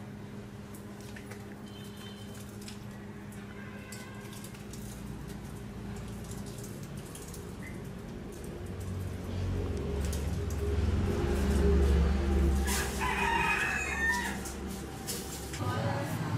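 A rooster crowing, loudest about thirteen seconds in, with fainter calls earlier. Under it is a low rumble that builds through the middle and drops away just before the end.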